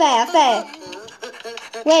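Cartoon characters' squeaky, high-pitched gibberish voices, their pitch sliding up and down, in the first half second and again near the end. Between them is a quieter stretch of faint clicks.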